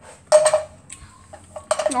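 A metal frying pan knocked down onto an electric stove's coil burner: one sharp clank with a brief ring about a third of a second in, then a few faint clicks.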